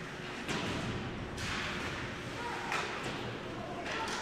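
Ice hockey play in an indoor rink: skates scraping on the ice, with a few faint knocks of sticks and puck. A longer hiss runs from about one and a half to nearly three seconds in.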